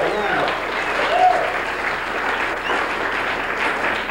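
Small audience applauding, with a few shouts and whoops mixed in.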